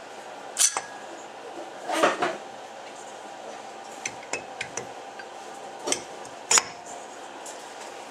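Metal clinks and knocks as a Volkswagen Type 4 cylinder barrel is pushed along the head studs over its piston toward the crankcase. There are several short, separate clinks, with a small cluster about four seconds in and the loudest near the end.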